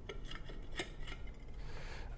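Faint light clicks and scrapes of a metal wire toaster basket being opened and handled against a plate.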